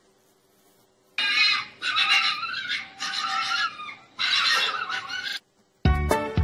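A red fox calling: four high-pitched, drawn-out cries in a row, starting about a second in.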